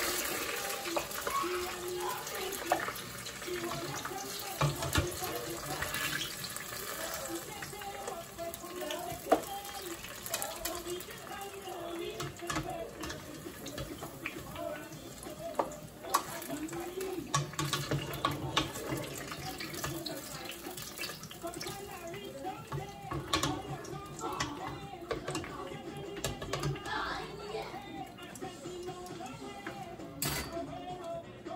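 Hot oil sizzling steadily as scallions, garlic and hot peppers fry in a pot, with scattered sharp pops from the moisture in the vegetables.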